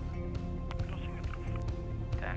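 Background music over the steady low drone of a single-engine light aircraft's engine and propeller at taxi power.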